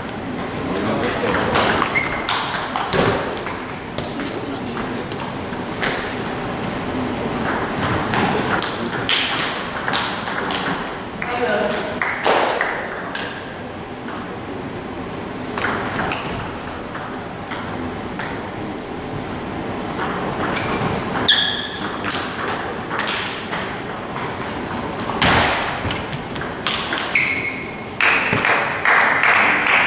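Table tennis ball clicking off the bats and bouncing on the table in repeated short rallies, with voices talking in the background.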